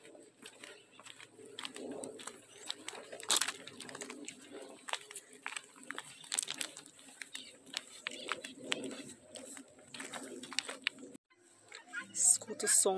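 Footsteps crunching steadily on a gravel dirt road, with doves cooing in the background. The sound drops out briefly near the end.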